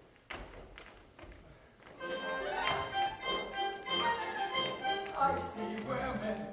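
A few faint knocks, then about two seconds in a concert orchestra starts playing, with held notes moving from chord to chord.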